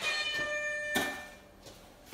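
A countdown timer's alarm sounding as the minute runs out: one steady electronic tone held for just over a second before fading, with a light knock about a second in.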